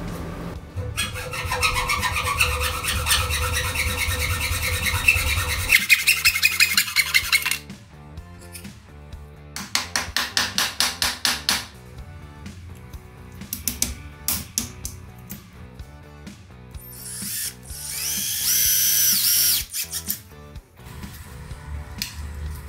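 Workshop tool sounds over background music. A long stretch of dense rubbing or scraping comes first, then a quick run of rhythmic strokes about five a second, scattered knocks, and near the end a short whining power-tool burst.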